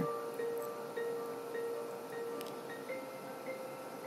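Quiet background music of chime-like tones: a held note under a slow, even run of short higher notes.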